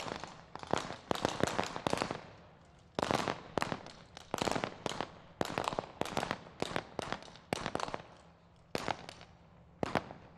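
Rifle gunfire with blank ammunition: rapid single shots and short strings of shots, pausing briefly about two and a half seconds in and again around eight seconds in.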